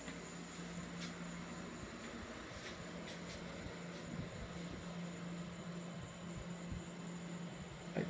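Steady low hum and air noise from running room appliances in a small room, with a few faint clicks and soft bumps from the camera being handled.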